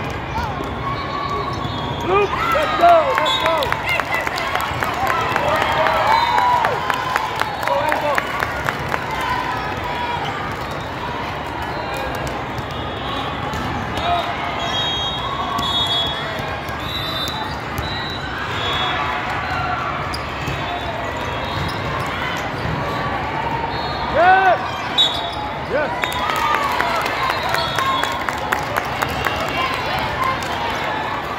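Echoing sports hall full of volleyball play: constant chatter of players and spectators, with volleyballs being hit and bouncing, and short squeaks, busiest in the first third and again shortly before the end.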